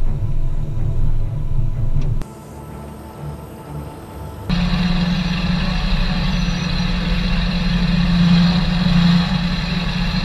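Low rumble of a military truck's engine heard inside the cab, cutting off abruptly about two seconds in. After a quieter stretch, ominous background music with a loud, steady low drone comes in about halfway through.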